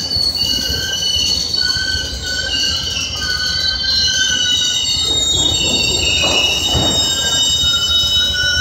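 GO Transit bi-level passenger coaches rolling past as the train pulls into the station, their steel wheels squealing on the rails in several high, wavering tones over a low rumble. The squeal grows a little louder in the second half.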